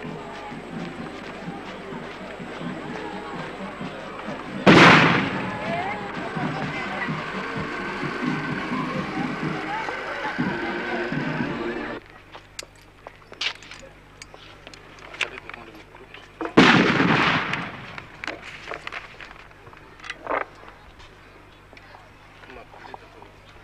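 Old outdoor field recording of a ceremony: a busy background of voices and music, broken by a loud sudden bang about five seconds in that dies away over a second. After the sound abruptly drops to a quieter background, a second loud bang comes about twelve seconds later, followed by a smaller one.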